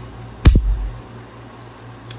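A single sharp click about half a second in, with a brief low thud: the hammer of a Manurhin-built Walther P1 9mm pistol falling as the trigger is pulled in single action.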